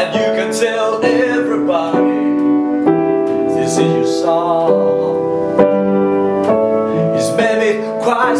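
Piano playing held chords that change about once a second, with a man's voice singing a wavering line over them in places.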